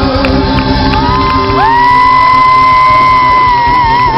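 Live rock band (drums, electric guitar, keyboard) playing loudly, with a male lead singer holding one long high note from about a second in that wavers near the end.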